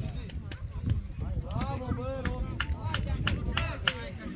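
Football players shouting and calling to each other across the pitch, with a loud low rumble of wind on the microphone and a few sharp clicks.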